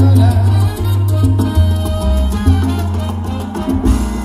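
A live salsa band playing through a concert PA, with a heavy bass line and steady percussion.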